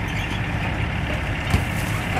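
A scrapyard excavator's engine running steadily as its grapple closes on a stripped car body, with one sharp crunch of sheet metal about one and a half seconds in.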